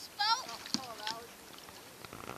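A high-pitched voice giving short, gliding cries in the first second, with one sharp knock among them, then quieter.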